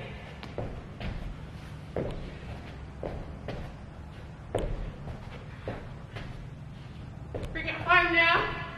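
Irregular thuds and taps of burpees being done on a floor, as hands and feet land, over a low steady hum.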